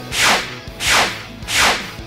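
Three whoosh sound effects, each a quick sweep falling in pitch, evenly spaced about 0.7 s apart. They accent on-screen captions as they pop up one after another.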